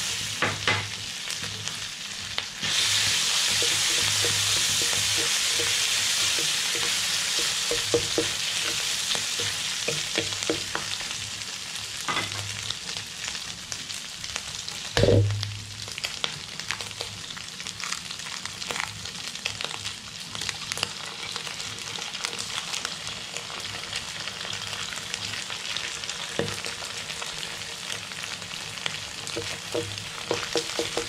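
Chopped pork for sisig frying in oil in a wok: a sizzle that swells about three seconds in and slowly eases off, with light scraping and clicks as it is stirred. One loud knock about halfway through.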